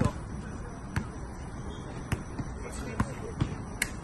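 Basketball bouncing on an outdoor hard court: about six sharp bounces at uneven intervals, roughly a second or less apart.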